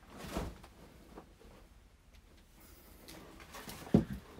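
Faint rustling of someone moving about, then near the end one sharp knock as a glass jar candle is set down on the desk.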